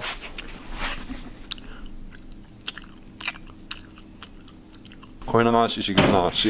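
A person chewing close to the microphone: irregular small crunches and clicks, over a faint steady hum.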